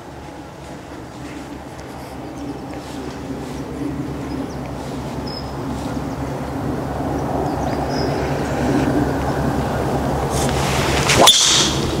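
A golf driver strikes a teed ball with a single sharp crack about a second before the end, just after the swing's whoosh. Underneath, a steady low hum with a few pitched tones grows gradually louder.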